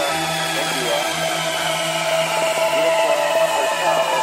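Dubstep track in a quieter, beatless passage: layered, buzzy sustained synth tones with slowly falling pitch sweeps high up over a steady low note.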